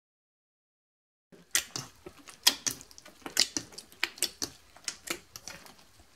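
A large mass of wet clear glue slime being pressed and kneaded by hand in a steel bowl, giving irregular sticky clicks, pops and squelches several times a second. The sounds begin about a second in, after dead silence.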